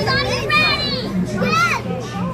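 Excited children's high-pitched voices, with several rising and falling cries, over general chatter of a crowded room.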